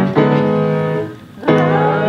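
Piano accompaniment playing ringing chords, with a group of voices singing a song in Dutch coming in about one and a half seconds in.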